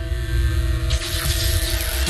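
Sci-fi electrical energy-beam sound effect from a TV soundtrack: a deep rumble under held music notes, with a crackling hiss joining about a second in.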